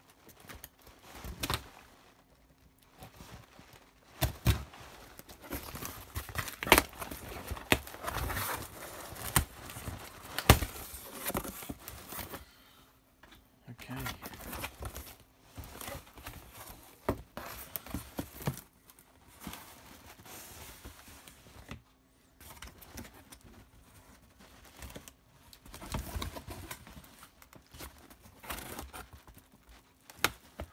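Hands tearing packing tape off a cardboard box and pulling open its corrugated flaps: irregular rips, scrapes and crinkling, with the loudest sharp rips between about four and twelve seconds in.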